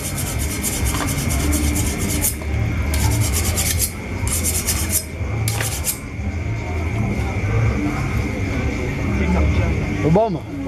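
Knife scraping and cutting as the hide is skinned off a slaughtered animal's carcass, heard as repeated rasping bursts through the first six seconds and then stopping, over an irregular low rumble.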